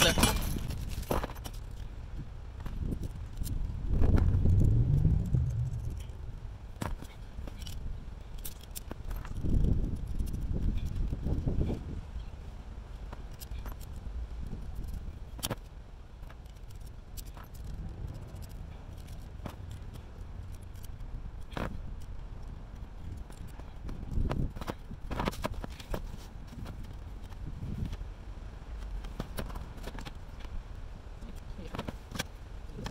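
Metal solar-panel mounting brackets and small hardware being handled and fitted together: scattered light metallic clicks and clinks. Now and then wind rumbles on the microphone.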